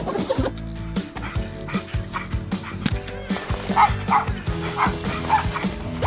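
A small dog yipping, several short high barks in the second half, over steady background music.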